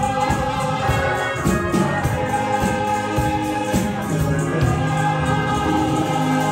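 A small gospel vocal group of four voices singing together over a steady beat.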